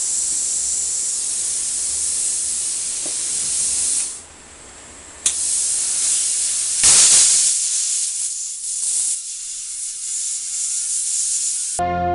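CUT40 plasma cutter torch hissing as it cuts into a steel argon bottle. The hiss stops about four seconds in and restarts with a click just after five seconds. It is loudest around seven seconds and cuts off just before the end.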